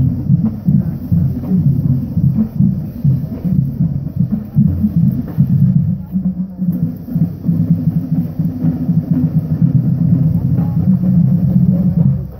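Marching band drumline playing a parade cadence: a steady, driving drum rhythm with frequent sharp strokes.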